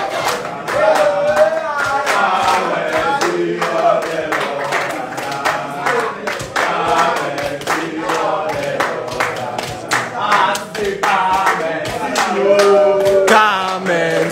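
A group of men singing together with hands clapping along, a lead singer's voice on a microphone.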